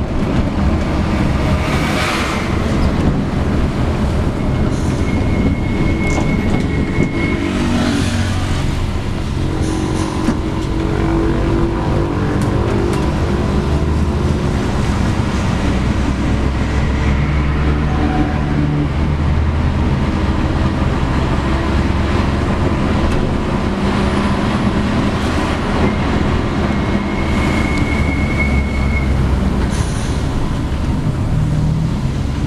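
Mercedes-Benz O-500M city-to-city bus heard from inside the passenger cabin while driving. The engine runs steadily and its pitch rises and falls with the throttle, over road and tyre noise and the rattles of the bus body.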